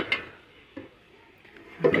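Two quick metal knocks as a hard-anodized cookware pot is picked up off a shelf, with a fainter tap a little later. A woman starts speaking near the end.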